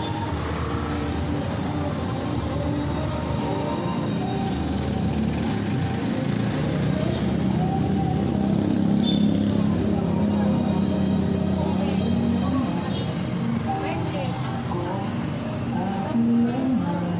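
Street traffic, with cars and motorcycles running past under a steady low engine hum, and people's voices talking throughout.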